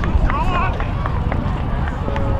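Shouting and calling from players and spectators around a rugby field, with one short call about half a second in, over a steady low rumble of wind on the microphone and a few sharp clicks.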